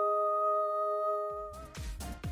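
Music: a steady held chord of a few sustained tones that breaks off about one and a half seconds in, followed straight away by an electronic beat with a regular low kick drum.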